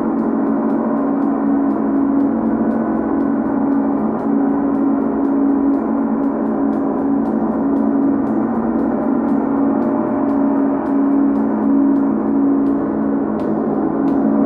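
Large hanging bronze gong played continuously with a soft felt mallet: a dense, steady wash of ringing overtones over a pulsing low hum, kept going by light strokes about three times a second.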